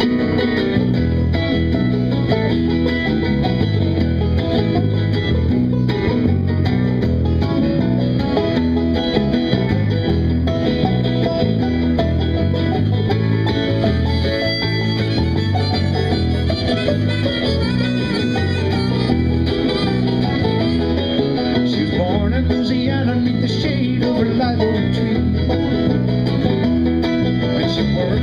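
Live band playing an instrumental intro in a country-bluegrass style, with acoustic guitar, banjo and electric bass at a steady level.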